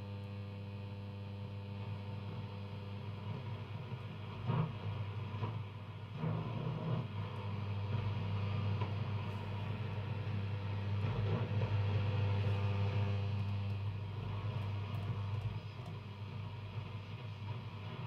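Philips F6X95A valve radio's loudspeakers on a shortwave band while it is being tuned: a steady low hum under hiss and static. Faint, brief snatches of signal come through a few seconds in, and the static swells and fades as the dial moves across weak reception.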